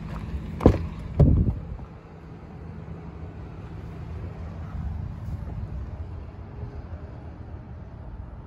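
A truck cab door being opened: a sharp click of the handle and latch about half a second in, then a heavier clunk as the door releases and swings open. A steady low rumble continues underneath.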